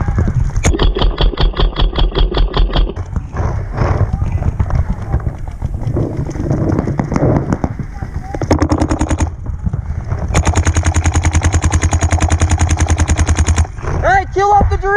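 Paintball marker firing in rapid bursts of about a dozen shots a second: a burst of about two seconds near the start, a short one past the middle, and the loudest and longest, about three seconds, near the end.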